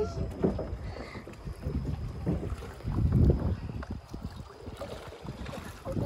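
Kayak paddles dipping and splashing in a flowing river, with wind buffeting the microphone in uneven gusts, strongest about three seconds in.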